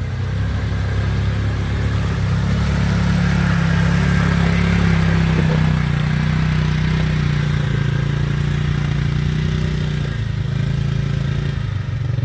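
Side-by-side UTV engine running at a steady, moderate speed as the machine fords a shallow creek and climbs out, with water splashing around the wheels.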